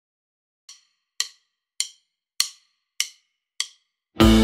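Metronome count-in: six evenly spaced clicks a little over half a second apart, the first one softer, counting in the playback of the piece.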